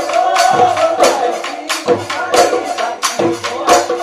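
Bihu husori music: dhol drums beaten in a quick, steady rhythm of about three to four strokes a second, with bright metallic jingling over them and a held melodic line beneath.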